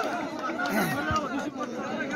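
Crowd of spectators chattering, many voices overlapping, with a low thump about a second in.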